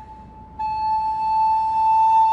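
Wooden recorder played solo: a note fades out, and about half a second in a single long note starts and is held.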